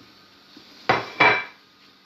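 Two clattering knocks of kitchenware, about a third of a second apart, the second with a short metallic ring.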